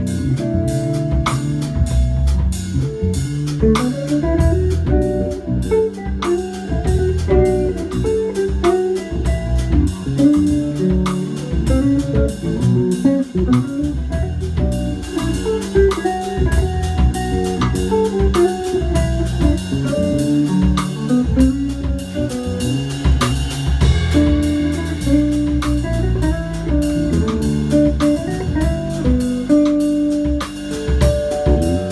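Live instrumental trio of a semi-hollow electric guitar, an electric bass and a drum kit. The guitar plays the melody over a steady groove, with regular hi-hat and cymbal strokes.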